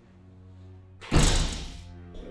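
Soft background music with long held tones, and about a second in a single heavy thud that dies away over about half a second.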